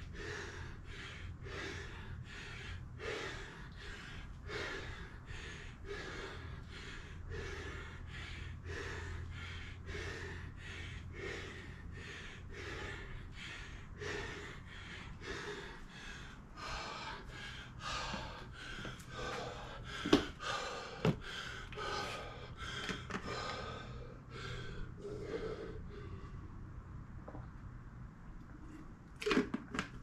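A man panting hard after kettlebell swings and squats, about two breaths a second, out of breath from the exertion. The breathing slows and grows less regular about halfway through, with two sharp clicks about twenty seconds in.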